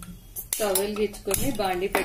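Metal kitchen utensils and dishes clattering and clinking in short strokes from about half a second in, with a woman's voice over them.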